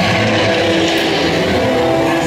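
Dark-ride car running along its track, under the ride's soundtrack music with steady held chords.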